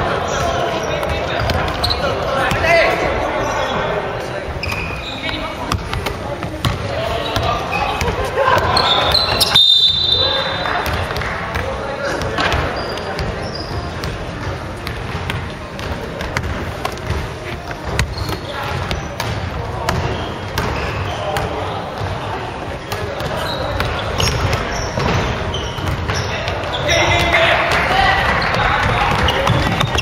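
A basketball bouncing on a wooden gym floor amid players' shoes on the court, with voices calling out throughout.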